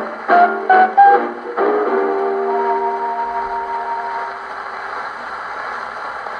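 The closing bars of a 1946 78 rpm shellac record of a Hawaiian band, played acoustically on an HMV 104 gramophone with a thorn needle. A few short plucked-string notes lead into a final held chord about a second and a half in, which fades away. The steady hiss of the record's surface noise is left.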